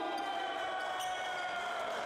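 Several steady tones held together like a sustained chord, with a couple of faint knocks, one just after the start and one about a second in.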